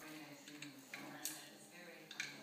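Quiet room with a faint steady hum and a few light clicks or taps near the middle.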